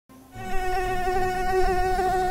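Buzzing of a flying insect, like a fly: one steady, slightly wavering drone that starts about a third of a second in.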